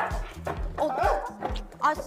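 Several short, high-pitched yelping cries over background music with a steady bass line.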